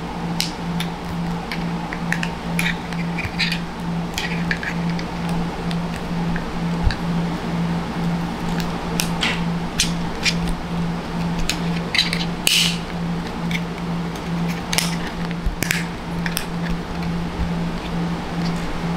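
Scattered small plastic clicks and creaks as a replacement lens is pressed and flexed into an Oakley Sutro sunglasses frame by hand, with one longer, sharper squeak past the middle. Under it runs background music with an evenly pulsing low note.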